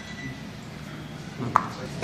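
A single sharp click with a short ring, about one and a half seconds in, from a plastic marker pen being handled against the paper and table, over a faint steady low hum.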